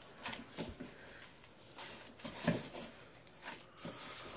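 Gloved hands kneading soft butter into a firm potato dough in a steel bowl: irregular squishes and plastic rustles, loudest about two and a half seconds in.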